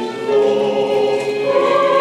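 A group of young voices singing together in sustained notes, moving up to a higher note about one and a half seconds in.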